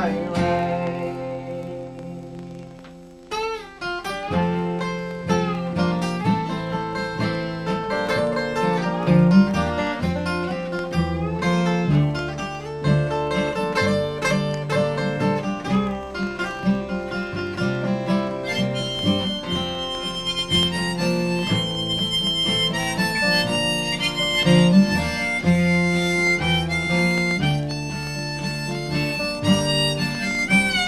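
Acoustic folk band playing live: a chord rings out and fades over the first three seconds. At about three and a half seconds the band comes back in, with a harmonica in a neck rack taking the lead over strummed acoustic guitars and upright bass.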